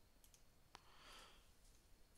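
Near silence, with a single sharp computer-mouse click a little under a second in.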